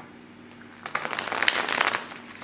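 Tarot deck being shuffled by hand: a quick, dense run of card flicks and riffles starting about a second in.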